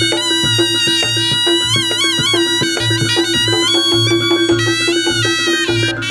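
Live Reog gamelan accompaniment: a reedy slompret (Javanese shawm) plays a wavering, bending melody over a low drum-and-gong beat about twice a second and a steady held tone.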